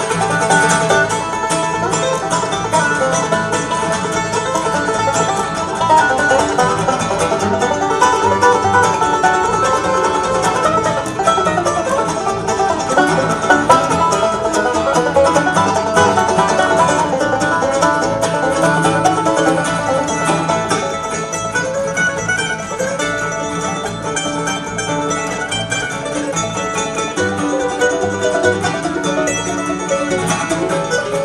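Live acoustic bluegrass band playing an instrumental passage on mandolin, fiddle, acoustic guitar and upright bass, with fast plucked string notes.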